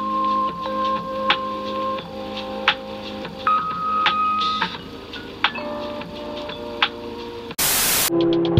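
Electronic beeps and held tones that step from one pitch to another, with scattered sharp clicks. A short burst of static hiss comes near the end.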